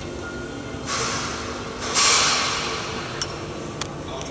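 Two bursts of compressed-air hiss from a pneumatic tool, the second louder and fading over about a second, over a steady background hum, followed by a few sharp clicks near the end.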